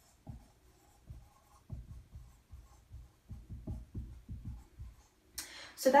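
Dry-erase marker writing a word on a whiteboard: a run of short, quick strokes.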